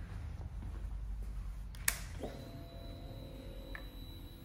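A 2013 Triumph Speed Triple R's ignition switched on: a sharp key click a little before halfway, then the fuel pump priming with a low steady hum for about a second and a half, under a thin high whine that carries on.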